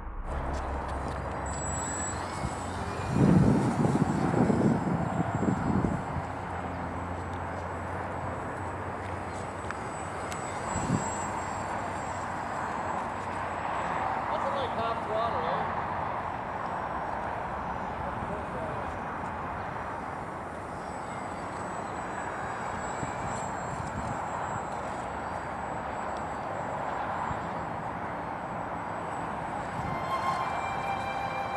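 Small RC flying wing's 2000KV 8-gram electric motor and 5x4 propeller whining as it flies. It sits under a steady wash of outdoor noise, with a louder low rumble about three to six seconds in and the pitch wavering about halfway through.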